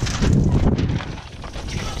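Wind buffeting the microphone: a low rumble, strongest for about the first half-second and then easing.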